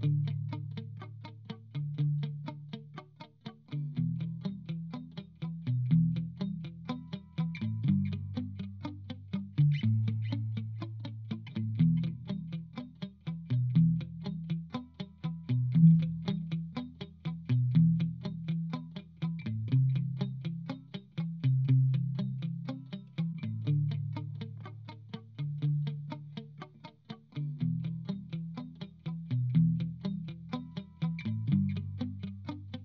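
Electric guitar (LTD SN-1000W) played through a Blackstar ID:Core Stereo 150 combo amp, using the amp's looper: a recorded rhythm part keeps repeating underneath while quickly picked notes are played over it. The chords change every couple of seconds.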